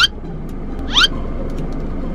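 Steady low rumble inside a car's cabin, with two short, sharply rising squeaks about a second apart.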